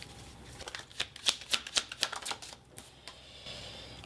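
Tarot deck being shuffled by hand: a quick run of crisp card clicks that thins out in the second half.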